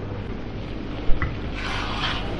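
Steady rushing noise of a commercial kitchen's gas burner and extraction, with a short clink about a second in.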